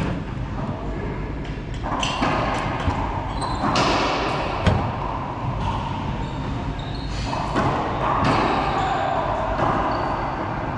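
Racquetball rally in an enclosed court: the ball is struck by racquets and cracks off the walls and hardwood floor, each hit echoing in the court. The sharpest crack comes about halfway through.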